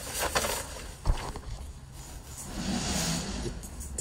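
Handling noise as a large paper drawing sheet is moved and rustled, with a dull thump about a second in, over a low steady hum.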